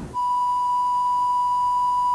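A single steady electronic bleep tone, held for about two seconds and then cut off. It is a censor bleep laid over the reporter's words.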